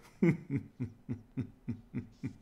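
A man chuckling: a run of short laughs, about three or four a second, each dropping in pitch.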